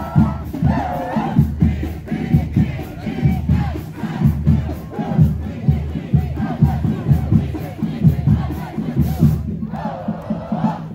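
Marching band members shouting and chanting together over a regular low beat, about three beats every two seconds.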